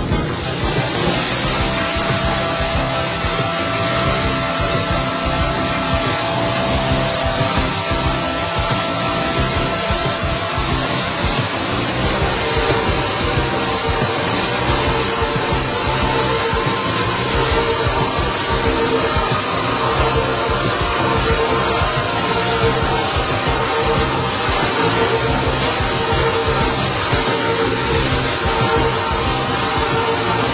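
Leadwell V-40M CNC machining centre milling a metal block under coolant: a steady cutting and spraying hiss with a few held tones, mixed with background music.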